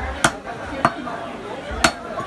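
Butcher's cleaver chopping goat meat on a wooden log chopping block: three sharp chops, the first and last the loudest.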